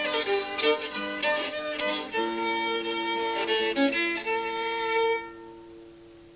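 Old-time fiddle playing a tune, often with two strings sounding together, ending on a long held note a little after five seconds in that rings away.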